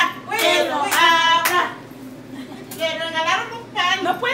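Women's excited, drawn-out voices, with a few sharp hand claps in the first second and a half.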